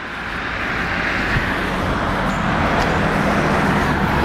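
A road vehicle driving past close by, its tyre and engine noise swelling over the first couple of seconds and then holding steady.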